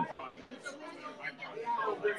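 Faint background chatter of several voices in a short pause between speakers.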